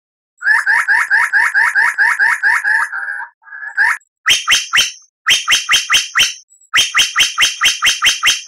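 White-rumped shama (murai batu) song: a fast run of repeated down-slurred whistled notes, about five a second, then after a short break runs of sharp, clicking notes in a quick even rhythm.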